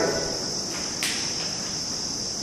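Insects calling steadily in a high, even band, with a single sharp click about a second in.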